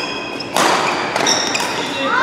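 Badminton rally: sharp racket strikes on the shuttlecock, the loudest about half a second in, with brief squeaks of court shoes on the mat.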